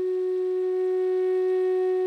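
Music: one long flute note held at a steady pitch.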